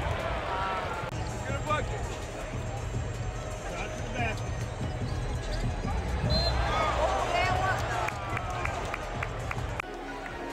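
Arena sound at a live NBA game, heard from the stands: crowd voices and music over the arena PA, with a basketball bouncing on the hardwood court. A row of quick sharp ticks comes near the end.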